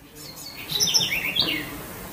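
Birds chirping: a quick run of short high chirps, about a second long, starting about half a second in, over steady outdoor background noise.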